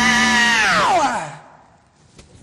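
A woman's voice holding a long high sung note, then sliding steeply down in pitch and dying away about a second and a half in.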